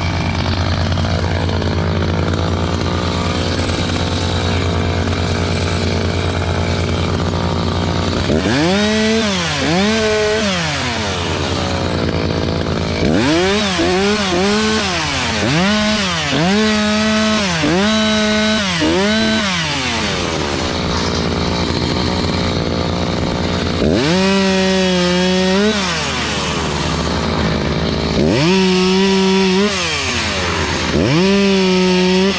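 Two-stroke chainsaw idling steadily for about eight seconds, then revved up and down again and again as it cuts the branches off a felled larch trunk. The engine pitch rises under each cut and drops back between cuts.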